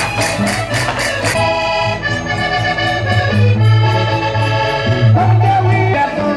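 Live Portuguese folk-dance music with an accordion-like melody, a steady bass beat, and bright, rapid percussion strokes. The high percussion drops out about a second and a half in, leaving held accordion chords over the beat.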